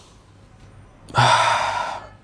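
A man breathing out hard through the mouth in one long exhalation starting about a second in, as part of a deep-breathing, arm-raising exercise to ease breathlessness.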